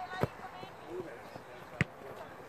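A football kicked hard, a sharp thump about a quarter second in, then a second, louder thump near the end.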